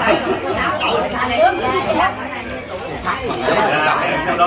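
Several people talking at once in a room: indistinct overlapping chatter of a seated group of guests, with no single voice standing out.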